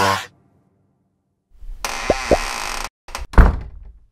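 The pop song cuts off, and after about a second of silence comes a short sound-effect sting: a burst of hiss with two quick rising whistle-like glides, two small clicks, and then a single heavy thunk that dies away.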